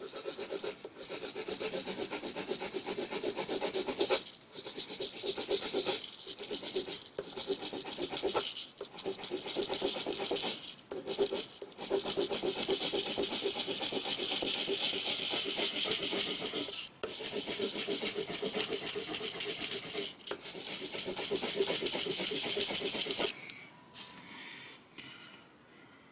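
Blue coloured pencil shading on drawing paper: long runs of quick scratchy strokes, broken every second or few by short pauses as the pencil lifts. It stops shortly before the end.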